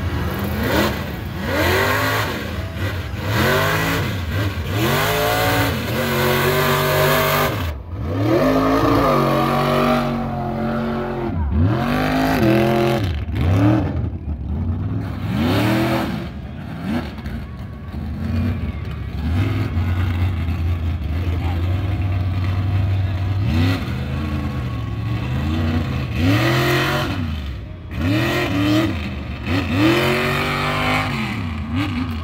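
A lifted mud truck's engine revving hard over and over as it drives through a mud pit, its pitch repeatedly climbing and dropping, every second or two, as the throttle is worked.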